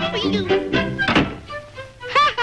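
Brassy cartoon orchestra music, broken about a second in by a single loud thunk of a door slamming shut.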